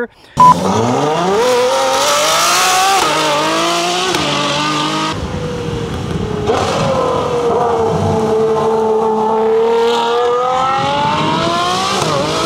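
Ferrari 812 Superfast's V12 engine accelerating hard, its pitch climbing through the revs and dropping back at upshifts about three and five seconds in, then rising steadily again toward the end.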